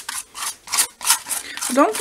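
A palette knife scraping thick gesso across a paper collage in short, quick strokes, about three a second.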